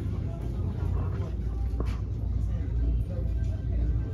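Store ambience: a steady low rumble with faint background music and indistinct voices.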